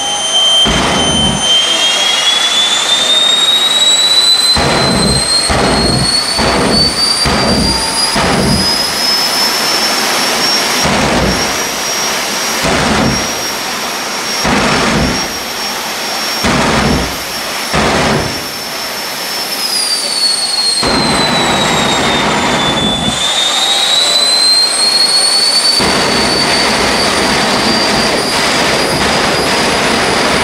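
Jet car's jet engine running, its high whine climbing as it spools up, then holding. The whine dips about two-thirds of the way through and climbs again. Through the first two-thirds, deep blasts of the afterburner fire show come about once a second, and near the end they give way to a steady heavy rush with the afterburner lit.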